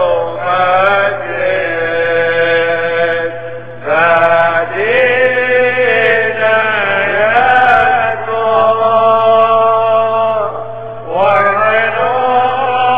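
Syriac Catholic liturgical chant sung by a single man's voice, with long held notes and slow melodic turns. It breaks briefly about four seconds in and again near the end before the next phrase.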